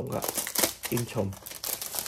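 Clear plastic bag crinkling as hands pull it off a flat packaged item.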